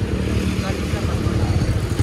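Rusi motorcycle tricycle's small engine idling steadily with an even low pulse.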